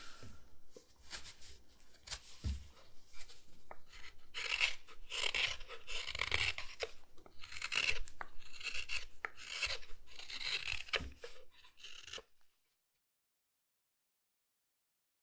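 Carving knife shaving chips off a block of wood by hand: a run of short, irregular scraping cuts, each stroke a fraction of a second. The cutting stops suddenly near the end.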